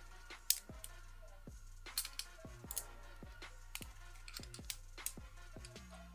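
Small plastic Lego pieces clicking and snapping together as they are handled and fitted, in irregular sharp clicks, the loudest about half a second in. Background music with a steady low beat plays throughout.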